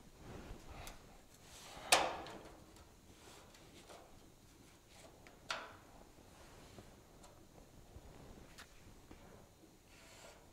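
Quiet handling of a marker and ruler against a car's sheet-metal dash: a sharp click about two seconds in, a softer one about five and a half seconds in, and faint small ticks and rubs between them.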